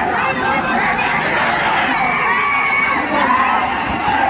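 A large crowd of young men shouting and cheering over one another. One high note is held for about a second midway.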